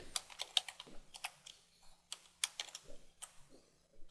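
Typing on a computer keyboard: faint keystroke clicks in quick, uneven runs.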